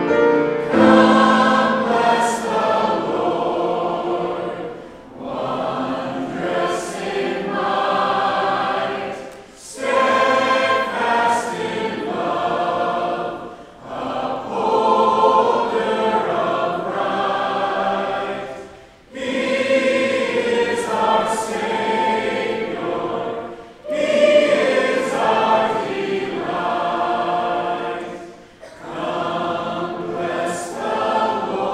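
A church congregation singing a hymn together, in phrases of about four to five seconds with short breaks between lines.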